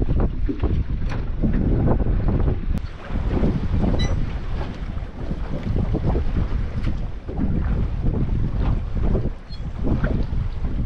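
Gusting wind buffeting the microphone, with choppy sea water against a small boat.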